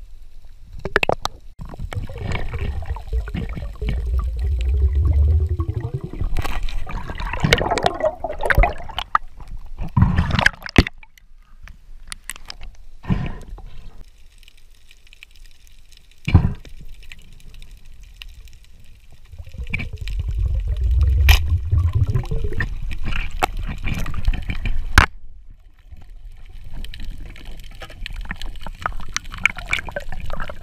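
Underwater bubbling and rushing water heard on a diving camera's microphone, in two long spells with quieter stretches between, with a few sharp knocks.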